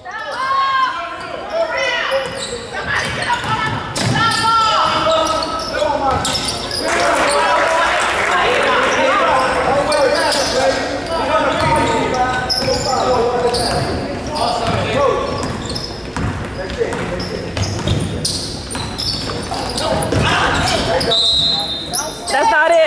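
Basketball being dribbled and bounced on a hardwood gym floor, with voices calling out and echoing through the large hall. A short, high whistle sounds near the end.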